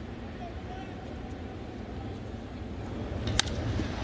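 Steady ballpark crowd murmur, then a single sharp crack of a wooden bat hitting a pitched baseball about three and a half seconds in, with the crowd noise swelling slightly after it.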